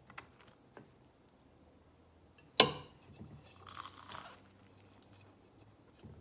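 A knife clinks sharply once on a plate, ringing briefly, and about a second later comes a short crackly crunch of biting into toast spread with crunchy peanut butter.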